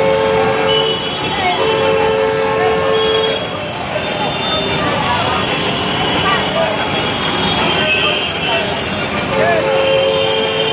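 Busy street traffic of auto-rickshaws and other vehicles, with long steady horn blasts twice in the first few seconds and again near the end, and people's voices close by.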